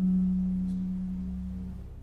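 A single note plucked on an archtop jazz guitar, ringing clear and fading away over nearly two seconds: one step of a C auxiliary diminished blues scale being played slowly, note by note.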